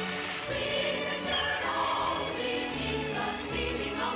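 Music with a choir singing, in held, overlapping notes.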